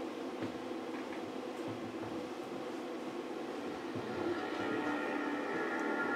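A steady low hum, joined from about four seconds in by a held, shimmering music chord: the opening of a TV channel's logo ident played over loudspeakers.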